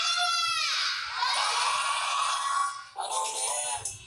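Soundtrack of an animated-film TV advertisement heard through a television set: a loud cartoon voice cries out at the start, its pitch arching up and falling, then music carries on with a voice over it after about three seconds.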